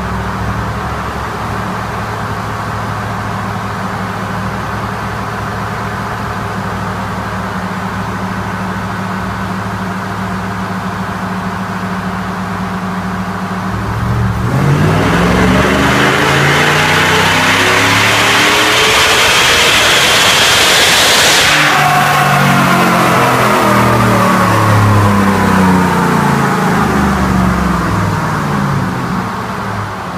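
Supercharged, cammed V8 of a 2014 GMC Sierra running steadily on a chassis dyno. About halfway through, a full-throttle pull begins: the engine gets much louder and its pitch climbs, with a strong high rush. It cuts off suddenly after about seven seconds, and the revs fall away as the truck coasts down.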